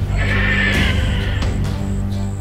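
Horror film score with a low, dense drone, and a high wavering screech that comes in just after the start and lasts about a second and a half.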